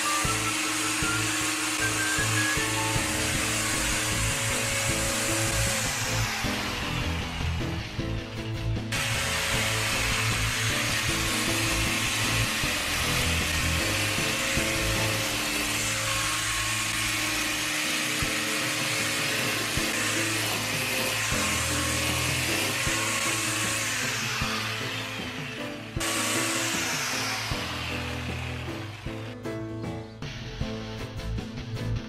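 A 115 mm angle grinder fitted with nylon trimmer line in place of its disc, running at speed and cutting grass, with background music playing over it.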